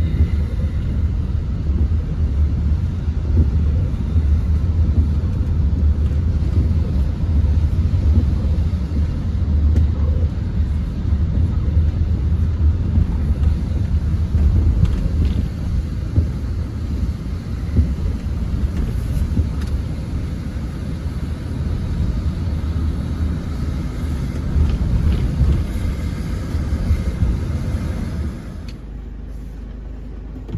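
Low, steady rumble of engine and road noise inside a moving car's cabin, which quietens a little before the end.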